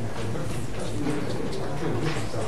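Indistinct low voices talking quietly over a steady room hum.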